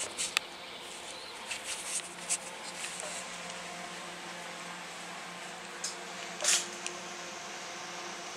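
Handling noise from the camera being moved: scattered clicks and rustles, the loudest about six and a half seconds in, over a faint steady hum.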